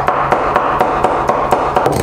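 Kitchen knife rapidly mincing raw clam meat on a wooden cutting board, a quick, steady run of chopping strokes.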